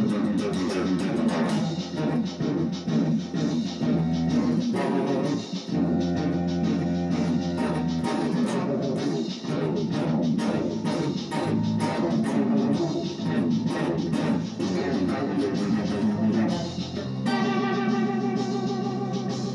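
Electric guitar played in an instrumental rock jam, with long sustained low notes underneath at times.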